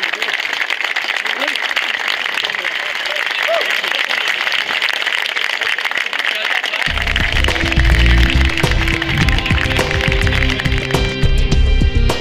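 A crowd of spectators applauding. About seven seconds in, loud music with a heavy bass line comes in over the applause.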